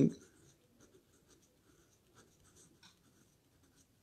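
Faint scratching of a pen writing on paper, in short separate strokes.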